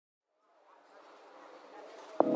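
Faint intro sound effect for a logo animation: a low hum and hiss that fade in after half a second of silence and swell steadily, leading into the intro music.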